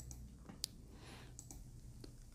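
A single sharp computer mouse click a little over half a second in, with a few fainter ticks later, over quiet room tone.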